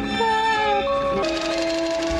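Orchestral film score music: a slow melody of held, gently falling notes, moving to a new sustained note a little past halfway.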